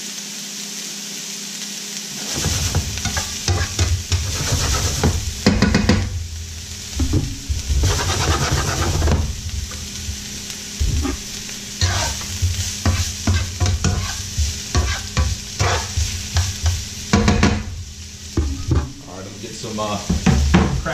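Diced bell peppers and onions sizzling in olive oil in a frying pan. From about two seconds in, the pan is shaken and worked on the burner in repeated uneven strokes that rattle the vegetables.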